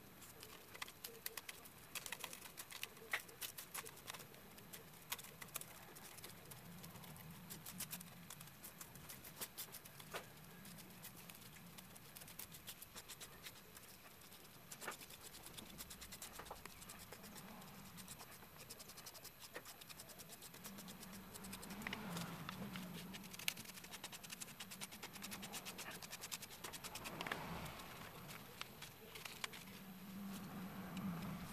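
Faint, irregular light clicks and scraping of a small plastic spoon spreading and pushing powder across a sheet of paper.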